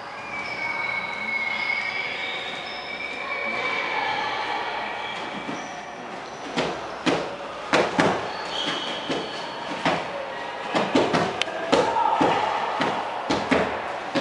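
Punches and strikes landing on a padded kick shield: many sharp thuds in quick, irregular series, beginning about halfway through. Before the strikes there are only a few thin, high, wavering tones.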